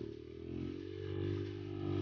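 Dirt bike engine running at part throttle on a trail, with a brief dip in level just after the start and then a steady pull.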